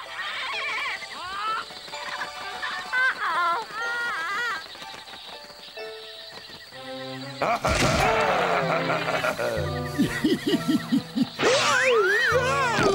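Cartoon soundtrack: background music with short squawking parrot calls in the first half, then a sudden loud burst of sound effects with falling cries about seven and a half seconds in, followed by a pulsing low music passage.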